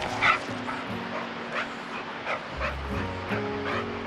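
An excited dog giving a string of short, high yips and whimpers, over background music.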